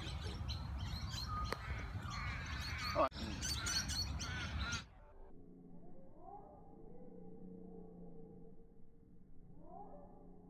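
Birds calling and chirping outdoors, including crow-like caws, over a low wind rumble; the sound cuts off abruptly about five seconds in, leaving a faint steady hum with a few soft rising tones.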